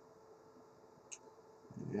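Near silence: faint room tone with a steady low hum, one brief click about a second in, and a man's voice starting just before the end.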